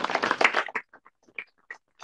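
A small audience applauding: a dense burst of clapping that thins within the first second into scattered single claps.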